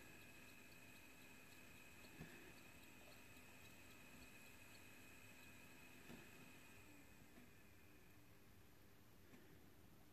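Near silence: faint room tone with a faint steady high tone that fades out about eight seconds in. Two faint light ticks, about two and six seconds in, come from metal tweezers setting tiny surface-mount capacitors onto a circuit board.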